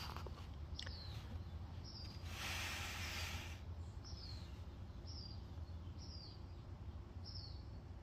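A small bird calling: about six short, high chirps that fall in pitch, roughly one a second, over a low steady background rumble. A brief hiss of about a second comes in about two and a half seconds in.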